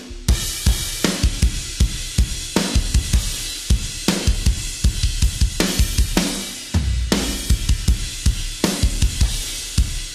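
Multitrack acoustic metal drums played back through an AudioScape 260VU stereo VCA compressor (a take on the dbx 160VU): rapid kick-drum hits and snare accents under a constant bright wash of cymbals, squeezed by heavy compression.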